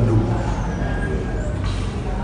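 A steady low mechanical hum, like an engine or motor running.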